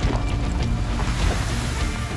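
Sand pouring out of a raised end-dump trailer onto a pile: a steady rushing hiss over a low rumble from the running truck.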